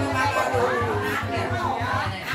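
A woman singing a Mường folk song in long, wavering held notes, over a steady low pulse about five times a second.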